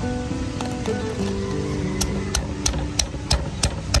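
Background music with held notes; about halfway through, a stone pestle starts pounding shallots and garlic in a stone mortar, about three sharp strikes a second.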